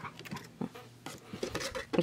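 A glass candle jar being handled on a desk: a few light, scattered clinks and taps.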